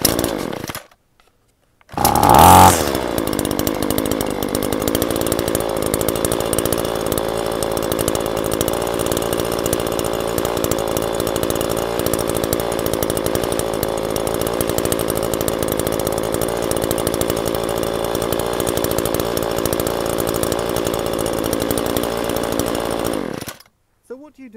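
Small two-stroke string trimmer engine pull-started: a recoil pull, then it catches about two seconds in with a brief louder burst and settles to run at a steady speed, stopping abruptly shortly before the end.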